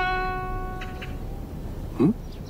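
A Chinese zither played slowly: the last plucked note rings on and fades, with a faint short pluck about a second in, and the playing then stops.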